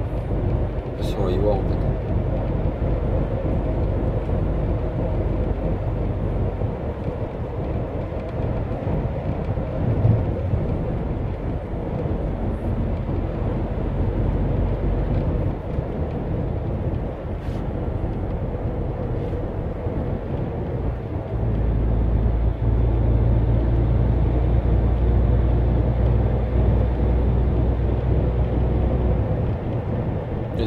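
Inside the cab of a MAN TGX 500 truck cruising on a motorway: a steady low drone from its six-cylinder diesel engine and the tyres on the road. The rumble grows deeper and louder from about two-thirds of the way through.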